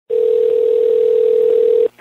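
Telephone ringback tone heard over a phone line: one steady tone lasting just under two seconds that cuts off sharply. It is the called line ringing, just before the call is answered.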